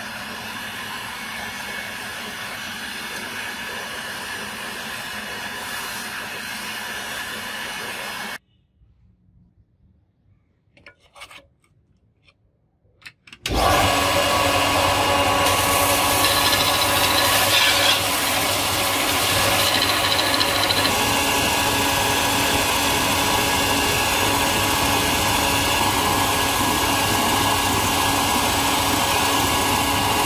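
Belt grinder running with a steel knife blank held against the abrasive belt: a loud, steady grinding that starts suddenly about halfway in, dropping slightly in level a few seconds later. Before it, a steady machine hum cuts off and leaves a few seconds of near silence with faint clicks.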